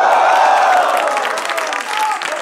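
Studio audience clapping and cheering together, loudest in the first second and easing off toward the end.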